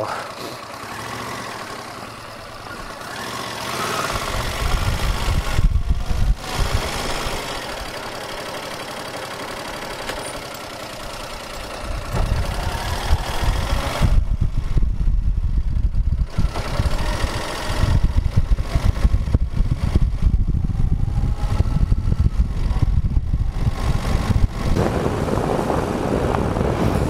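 Motorcycle engine running as the bike rides along, heard through a clip-on external microphone, with a heavy irregular low rumble that comes in about four seconds in and grows stronger later on.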